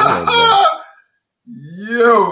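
Two loud wordless vocal exclamations, hollers of reaction to a shocking remark: the first slides down in pitch and dies away within a second, the second comes after a short pause, rising and then falling in a drawn-out 'ooh'.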